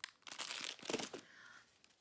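Clear plastic wrapper of a small Ferrero Rocher pack crinkling as it is handled and set down: a cluster of crackles in the first second or so, then quieter.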